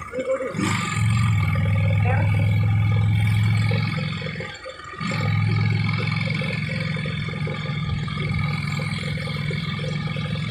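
A two-wheeler's engine running steadily while riding, with wind and road noise. It eases off briefly about halfway through, then picks up again.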